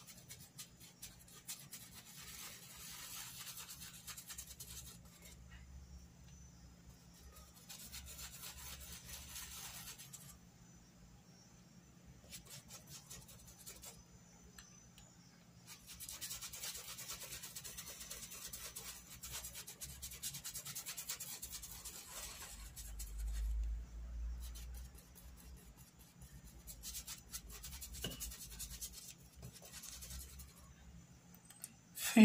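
Paintbrush scrubbing fabric paint into cloth in small circular strokes, a soft rubbing scratch that comes in several stretches with short pauses between.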